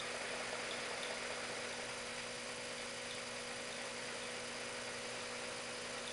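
A steady hum with faint hiss, unchanging throughout.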